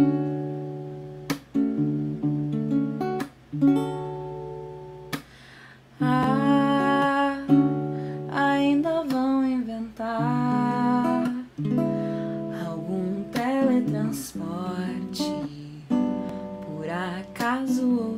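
Acoustic guitar strummed in separate chords about every two seconds, then a woman's voice begins singing over the strumming about six seconds in.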